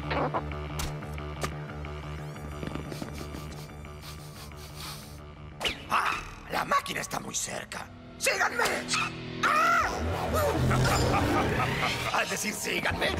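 Cartoon soundtrack: background score for the first half, then from about halfway wordless vocal sounds, yelps and exclamations from a character, over the music.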